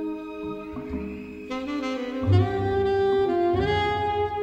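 Jazz-flavoured orchestral film score music: sustained brass and reed lines over low strings, with a loud low swell about two seconds in and the chord moving higher near the end.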